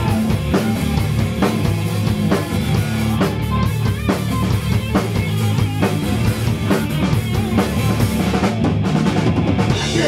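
Punk rock band playing live without vocals: a drum kit beat with bass drum and snare hits about twice a second, over bass guitar and electric guitar.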